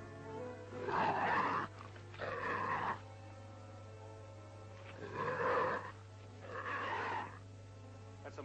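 A man imitating a mountain lion's cry four times, each cry under a second long, over faint background music and the steady hum of an old film soundtrack.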